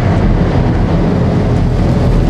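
Car engine running and tyres rolling as a large sedan drives slowly past, a steady low rumble.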